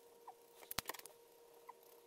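POSCA paint markers being handled and used: a quick cluster of sharp plastic clicks about three-quarters of a second in as pens are swapped, and faint short squeaks of a marker tip working on the painted surface.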